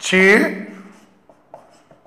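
Marker pen writing on a whiteboard: a few light taps and strokes of the tip in the second half. These follow a man's drawn-out spoken syllable at the start.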